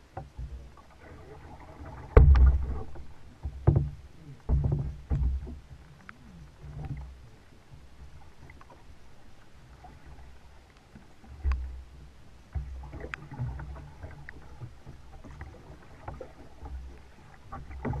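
Kayak paddling: irregular paddle strokes splashing in the water, with sharp knocks and low thumps close to the microphone. The strongest strokes come in a cluster a couple of seconds in and again about two-thirds of the way through.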